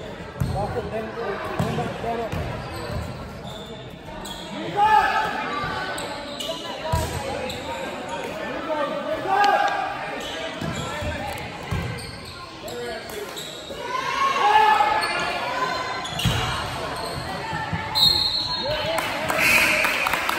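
Gymnasium sound of a basketball game: voices of players and spectators calling and shouting, echoing in the hall, with several louder shouts. A basketball bounces on the hardwood floor now and then.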